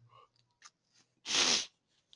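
A single short, loud burst of breath from a person, lasting about half a second, a little past the middle.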